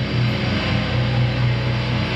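A metal band playing live at full volume, with heavily distorted electric guitars, bass and drums on a low riff.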